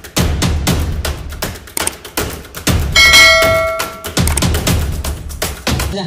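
Intro music built on rapid, heavy drum hits, with a bell-like chime about three seconds in that rings for about a second.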